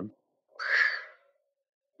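A single short, breathy vocal sound from one of the speakers, without a clear pitch, lasting well under a second about half a second in.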